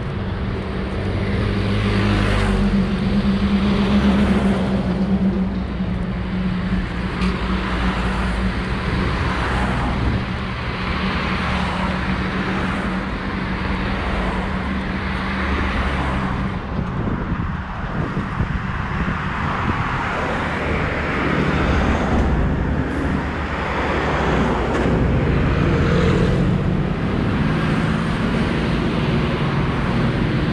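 Road traffic on a busy multi-lane city street: cars and buses passing close by, a continuous mix of engine and tyre noise that swells and eases as vehicles go past.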